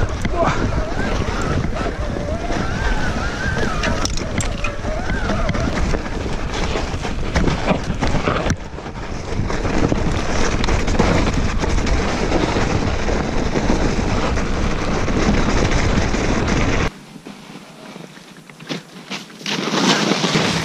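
Wind buffeting a bike-mounted camera microphone over the rush and rumble of an e-mountain bike's wide tyres rolling through snow. Near the end the sound drops suddenly to a quieter, thinner hiss with a few clicks, then swells again as the bike rides past close by.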